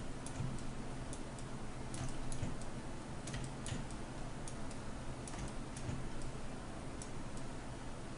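Computer mouse clicking: scattered, irregular light clicks over a faint steady low hum.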